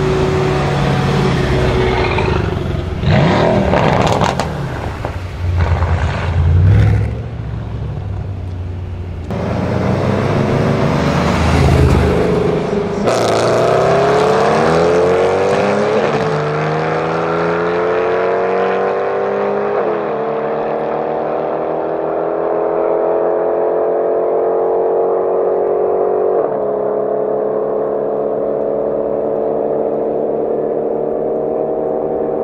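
Decatted Mercedes-AMG C63 S twin-turbo V8 and a second car at full throttle: uneven loud revs and bursts at first, then a hard launch about 13 seconds in and a long rising engine note. The pitch drops suddenly at three upshifts, and the sound grows duller as the cars pull away.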